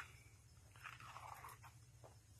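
Near silence, with a faint soft rustle about a second in.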